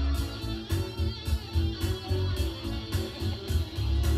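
A live band plays an instrumental guitar break in an up-tempo rock-and-roll song, with steady rhythmic strokes and no singing.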